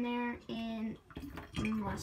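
A woman's voice making three drawn-out vocal sounds, each held at one level pitch, with a quiet gap between the second and third. They are filler sounds rather than words.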